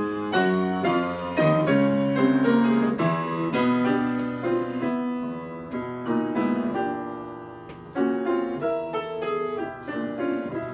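Grand piano playing the piano part of a choral score, a quick run of struck chords and melody notes. About six seconds in one chord is held and dies away, and then the playing picks up again with fresh attacks at eight seconds.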